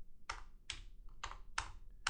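Individual keystrokes on a computer keyboard: about five sharp key clicks at uneven intervals as commands are typed.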